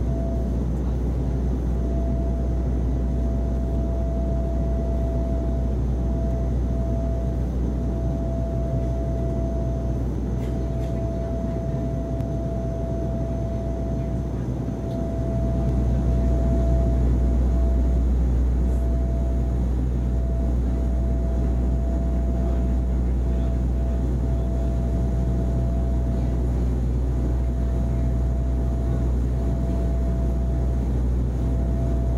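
Low, steady rumble of fighter jets flying past, heard through a television's speaker, growing a little louder about halfway through. A thin, steady high hum runs under it.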